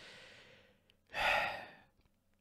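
A man breathing: a soft breath in, then a louder, rueful sigh out about a second in.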